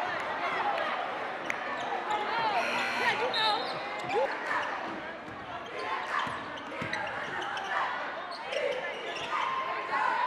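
A basketball being dribbled on a hardwood gym floor, its bounces sounding over a steady babble of crowd voices echoing in the gym.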